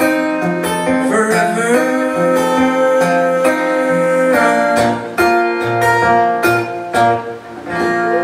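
Acoustic guitar strummed in a steady rhythm, changing chords every second or so, with a man's voice singing over it.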